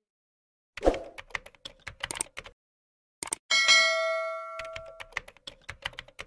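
Sound effects of a subscribe end-screen animation. A quick run of keyboard-typing clicks is followed, about three and a half seconds in, by a bright notification-bell ding that rings out for over a second, with a few more clicks near the end.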